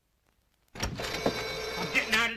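Near silence with a few faint ticks, then a film soundtrack cuts in suddenly under a second in: a voice over dense background sound.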